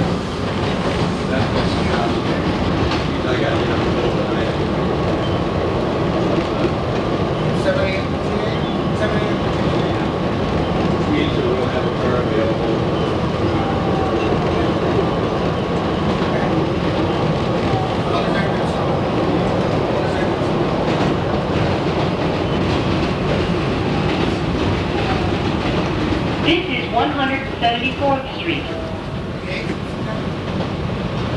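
Kawasaki R110A subway train heard from inside as it runs along elevated track: a steady rumble of wheels on rails with a steady whine from the propulsion running through it. Near the end there is a brief burst of higher, shifting sounds.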